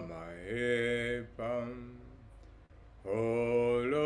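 A man singing a slow, unaccompanied worship chant, holding long notes: two held notes, a pause of about a second, then another long note near the end.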